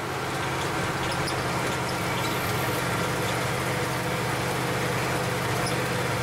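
The engine of an old farm truck running steadily as it drives, heard from inside the cab.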